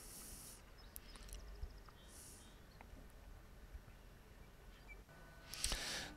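Quiet outdoor yard ambience with a few faint, short high bird chirps and brief soft hisses.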